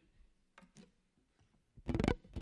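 A few faint clicks, then a louder sharp knock just before the end.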